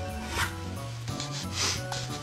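Two brief rubbing scrapes against a wooden surface, one about half a second in and a longer one near the end, over background music with sustained notes.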